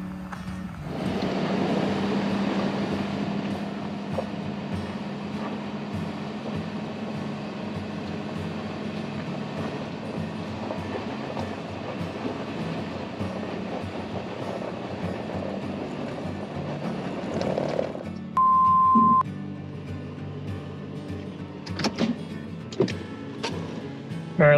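Ford F-450 pickup in four-low straining up a steep gravel grade, its engine running hard under load with a steady hum while the rear tires spin in the loose gravel and dirt without gaining traction; the worn hybrid tires cannot grip. About three-quarters of the way through, a short steady electronic beep.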